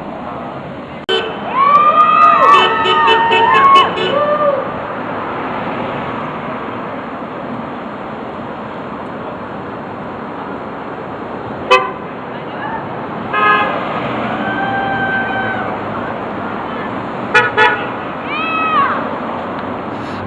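Passing cars honking their horns in answer to 'Honk for jobs' protest signs: a run of several overlapping horn blasts about a second in, and a longer steady honk a little past the middle, over continuous road traffic noise.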